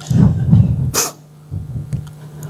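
Breath and voice sounds from a person close to a handheld microphone: short loud low bursts, with a sharp hiss about a second in.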